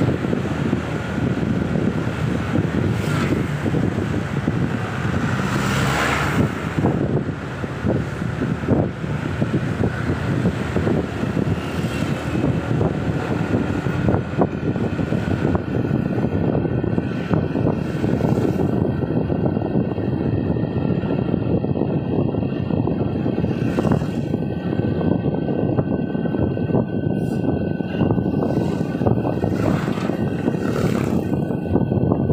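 Steady rumble of a car's engine and tyres on the road, heard from inside the cabin while driving, with a few brief louder swells.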